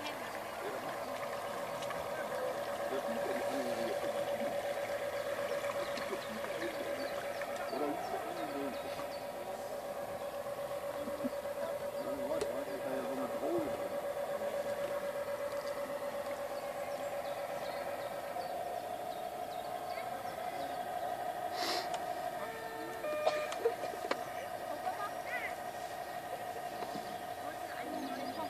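Steady whine from a radio-controlled model fireboat's drive motor as it cruises, stepping up slightly in pitch about 18 seconds in as the throttle changes. Faint voices murmur in the background.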